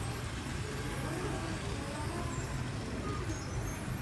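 Steady background ambience of a busy indoor hall: a constant low rumble with faint, distant voices.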